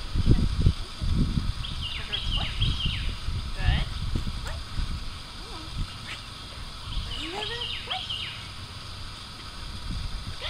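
Two bursts of high, quick chirping, about two seconds in and again near eight seconds, over low wind rumble on the microphone.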